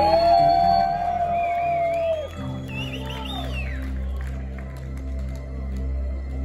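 A rock band's quiet, ambient song intro played live in a large hall: a long held note that bends away about two seconds in, then a steady low drone with sustained notes over it. Wavering whistles and cheers from the crowd fade in the first half.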